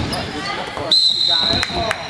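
A referee's whistle sounds a long steady blast starting about a second in, over a basketball bouncing on a hardwood court.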